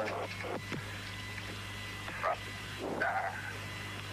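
Steady low hum on old broadcast audio, with a few brief, faint voice-like sounds between the commentary.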